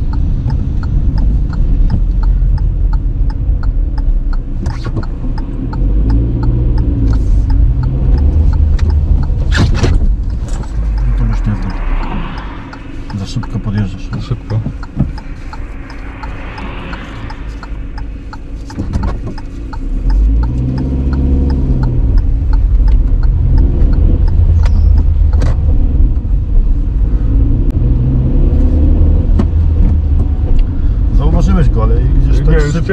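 A car's engine and road rumble heard from inside the cabin as it slows to a stop, idles more quietly through the middle, then revs up again as it pulls away about two-thirds of the way through.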